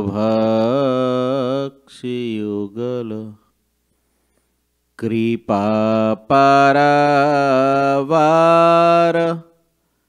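A man's voice chanting a Sanskrit verse on long, steady held notes, in three phrases with a pause of about a second and a half before the last, longest one.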